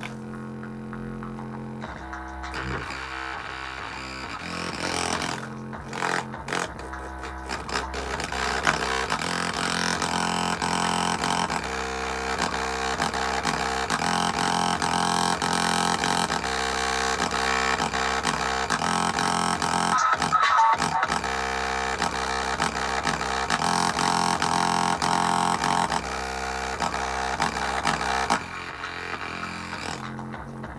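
Music played through a bare, unenclosed Dayton Audio cone driver while a hand presses on its cone. The music gets louder about a quarter of the way in and drops back near the end.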